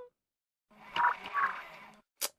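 A cartoon robot's electronic sound effect: a low hum with two quick croaky bleeps about half a second apart, coming in after a moment of silence.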